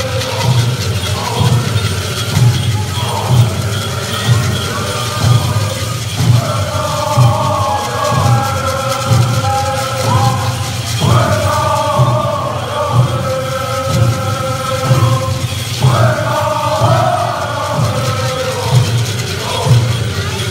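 Pueblo Buffalo Dance song: a chorus of singers chanting in unison over a steady drum beat, with fresh phrases starting about six, eleven and sixteen seconds in.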